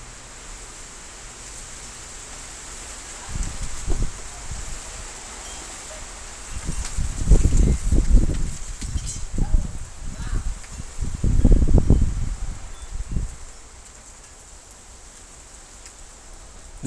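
Gusts of strong storm wind blowing against the microphone: irregular low surges that build a few seconds in, are strongest in the middle, and die away near the end.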